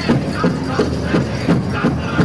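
Pow wow drum and singers: a steady beat on a big drum, about three strikes a second, under high-pitched group singing.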